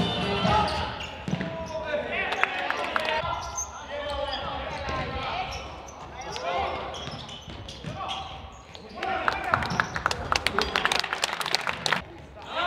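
Live futsal game sound on an indoor court: ball kicks and bounces, players' shouts and calls, and a quick run of sharp knocks and clicks in the last few seconds as play gets busy. A music bed fades out in the first second.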